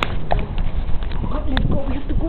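Indistinct voices with a few sharp knocks or clicks, one right at the start and another about one and a half seconds in.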